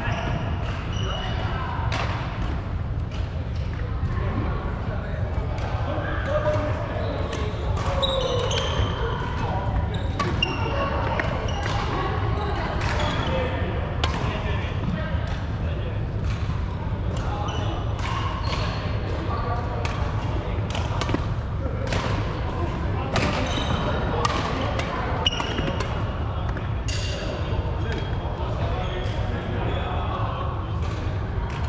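Badminton rackets hitting shuttlecocks, many sharp irregular hits through the stretch, with short squeaks of court shoes on the wooden floor and players' voices in the background of an echoing sports hall.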